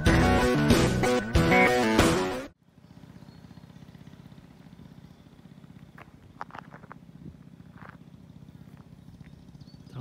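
Guitar music that cuts off suddenly about two and a half seconds in, followed by the quiet, steady pulsing of a small 49cc scooter engine idling, with a few faint clicks. The owner says the scooter is not running well.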